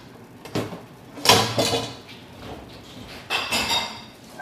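Black pepper being added to a pizza from a kitchen pepper container: a few short rattling, clattering sounds, the loudest about a second in and another near the end.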